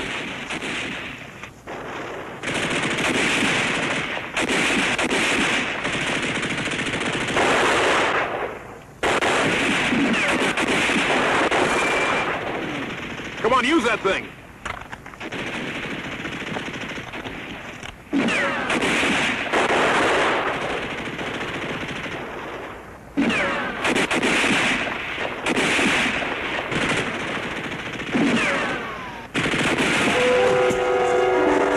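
Sustained automatic gunfire from a battle scene, in long bursts of several seconds each broken by short pauses.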